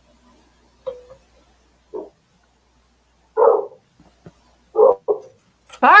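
A dog barking intermittently: about five short single barks a second or so apart, the last two close together.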